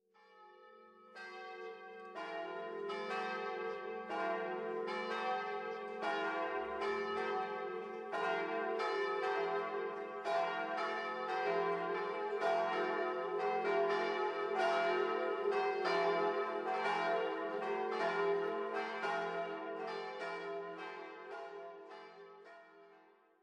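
Church bells ringing in a peal, a new stroke roughly every second over a sustained ringing hum, fading in at the start and fading out near the end.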